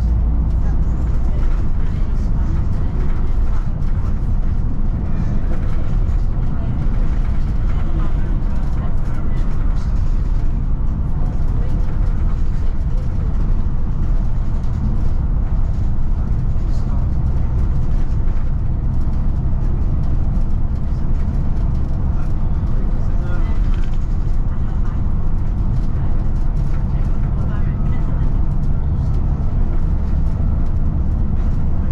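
Steady drone of a Volvo B9TL double-decker bus cruising at an even speed, heard from inside the cabin: engine and road noise with no gear changes or sudden events.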